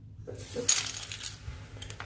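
Small hard plastic toy pieces clinking and clattering against each other and the tabletop, a quick cluster of light clicks early in the second half of a second, then a few faint ticks.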